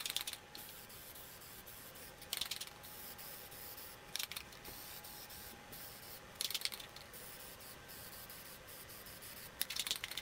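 Aerosol can of spray lacquer hissing in five short bursts, about two seconds apart, as a finish coat goes onto bare wood.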